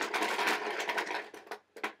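Small plastic balls rattling together as a hand stirs them in a container to draw one. The rattle stops about a second and a half in, followed by a few separate clicks as one ball is handled.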